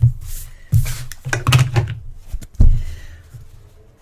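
Handling noise: a stitched fabric piece being picked up and moved about on a cutting mat, with rustling and several dull thumps and knocks, the loudest about two and a half seconds in.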